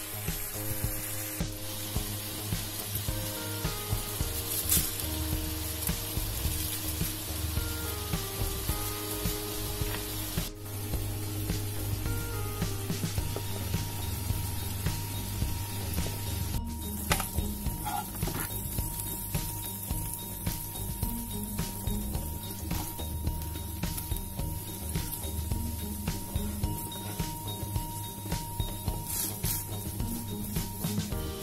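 Diced chicken sizzling in butter in a frying pan, under background music with a simple stepping melody. After about 16 seconds the hiss thins, leaving scattered light ticks and clicks under the music.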